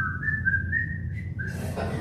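Someone whistling a short run of quick notes that step upward in pitch, with one more note near the end.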